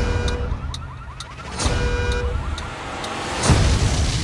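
A car alarm sounding in a fast repeating chirping pattern, with regular short clicks, broken by heavy deep booming hits. The loudest boom, about three and a half seconds in, is an explosion.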